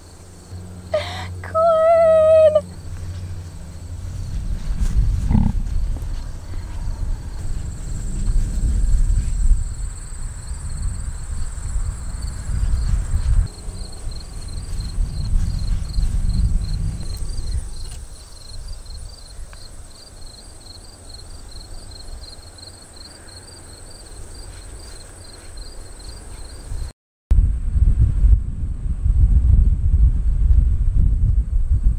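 Wind rumbling on the microphone in gusts, easing in the middle and picking up again near the end. Behind it, insects call steadily: a thin high buzz and a rapidly pulsing trill.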